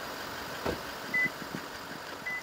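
A Toyota Land Cruiser's door shutting with a single thud, followed about half a second later by a short high beep of the remote lock, over a steady hum of traffic.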